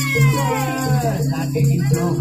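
Live Javanese jaranan accompaniment music: a percussion ensemble plays repeated pitched notes under a high, wailing melodic line that slides down in pitch over about the first second.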